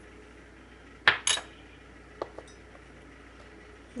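Two sharp clinks about a second in, of a small bowl or spoon knocking the ceramic crock pot insert while spices are tipped in, followed by two faint ticks a little after two seconds.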